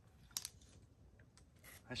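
Near silence broken by a single short, sharp click about a third of a second in.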